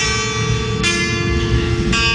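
Acoustic guitar played live, a strummed chord roughly once a second, each left to ring out.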